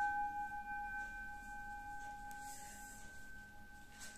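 A metal singing bowl ringing out after being struck, sounding two steady tones, one lower and one higher, that slowly fade away.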